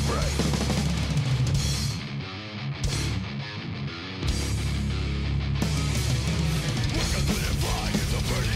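Heavy metal music with distorted guitars and a drum kit. About two seconds in the sound thins to a sparser break with the top end gone, and the full band comes back in at about four seconds.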